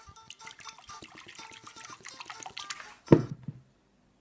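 Fizzy orange soda poured from a plastic bottle into a ceramic bowl, splashing steadily for about three seconds. Then a single loud thump and splash.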